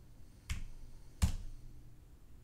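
Two sharp keystrokes on a computer keyboard, about three-quarters of a second apart, entering a command in a terminal.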